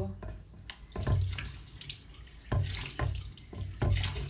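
Water poured from a small plastic pail into a ceramic vessel sink, splashing in several uneven gushes.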